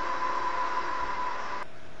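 Steady rushing noise with a faint steady high tone, fading and then cut off abruptly about one and a half seconds in, leaving only faint hiss.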